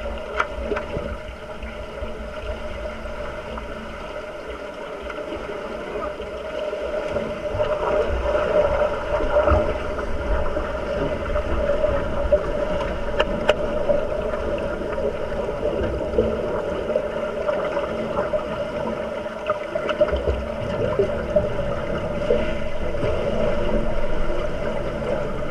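Underwater pool sound picked up by a camera below the surface: a steady hum over low, muffled rumbling and swishing from swimmers and bubbles, with scattered sharp clicks and knocks. It grows louder about seven seconds in.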